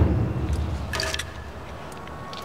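Low rumbling noise on a handheld camera's microphone, loudest at the start and fading, with a short click about a second in.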